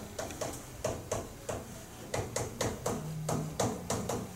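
Chalk tapping and scratching on a chalkboard as a math formula is written out: an irregular run of short, sharp taps, about four a second.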